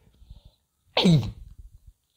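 A man's single short, sudden vocal outburst about a second in, falling steeply in pitch.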